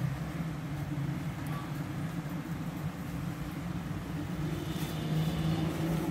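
A steady low mechanical hum, constant throughout, with no speech over it.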